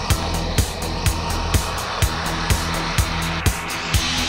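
Live band playing an instrumental passage of a song: a steady kick-drum beat about twice a second under sustained, droning bass and guitar tones.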